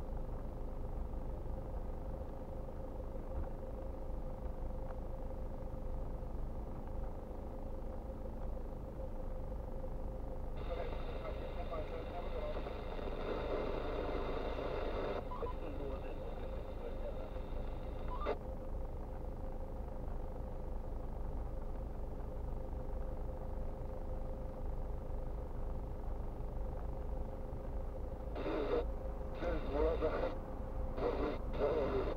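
Steady low hum of a car idling, heard from inside the cabin. Muffled voice chatter from a radio comes in from about ten to fifteen seconds in, and again in short on-off bursts near the end.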